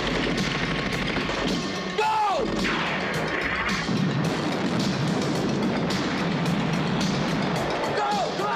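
Film explosion sound effects mixed with background music: a sudden blast near the start and another at about two seconds, then a steady rumble with many small crashes of debris.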